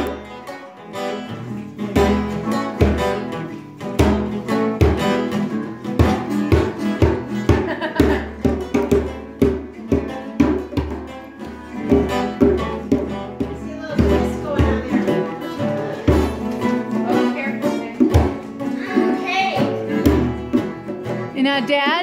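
Two acoustic guitars strummed together, playing an instrumental tune with a steady, even rhythm.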